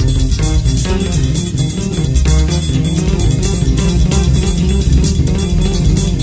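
An instrumental band passage with electric guitar and a prominent bass guitar line over a steady cymbal beat, with no singing.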